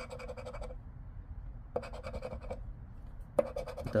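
A coin scratching the coating off a paper scratch-off lottery ticket, in three short bursts of quick strokes.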